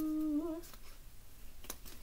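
A woman humming a held, steady "mmm" that ends with a small upward wobble about half a second in, then a few faint clicks.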